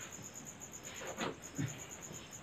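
Crickets chirping in a steady rhythm, a high pulsing chirp about five times a second, faint under the room tone.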